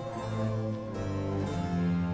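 Baroque period-instrument ensemble playing an instrumental passage: harpsichord continuo over held bass notes, the chord changing a few times.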